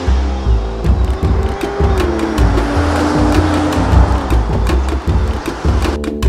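Background music with a stepping bass line and steady beat, over a car driving past on a wet road: tyre hiss, with an engine note that falls in pitch about two seconds in as it goes by.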